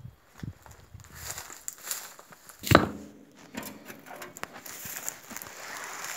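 Footsteps and handling noise on rocky ground: scattered crunches and clicks, with one loud knock a little under three seconds in.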